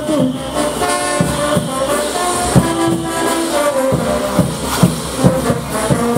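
Live brass band playing caporales music: held brass notes over a regular drum beat.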